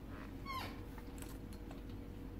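Airedale Terrier giving one short, high whine that falls in pitch about half a second in.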